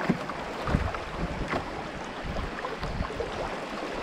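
Fast, shallow river water rushing and splashing around a moving canoe's hull, with irregular small splashes and wind rumbling on the microphone.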